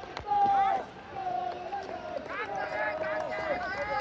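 Several voices shouting and calling out across an outdoor football pitch, with long drawn-out calls overlapping one another.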